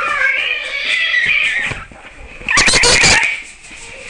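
A person's high-pitched, wavering yowling cries: one long one of nearly two seconds, then a shorter one about two and a half seconds in.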